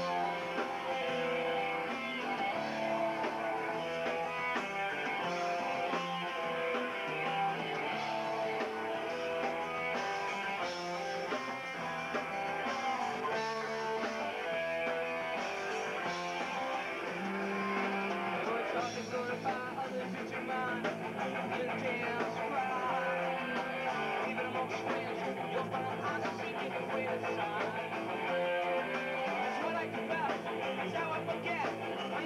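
Rock band playing live, with electric guitar to the fore.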